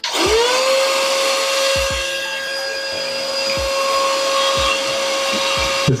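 Cordless handheld mini car vacuum cleaner switched on, its motor spinning up within about half a second to a steady whine over a loud rush of air, as it sucks up shredded paper and card, with a few short low knocks.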